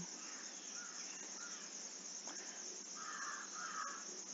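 Faint background ambience: a steady high-pitched hiss with a few faint short calls, the last one longer, near the end.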